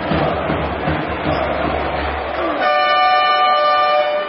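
Arena crowd noise, then about two and a half seconds in the basketball arena's game horn sounds: a steady, multi-toned horn that holds to the end.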